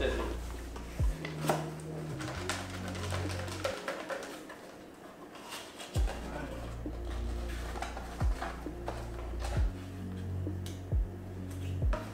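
Paper slips rattling and scraping inside a cardboard box as it is shaken by hand, over background music with a steady bass line and beat.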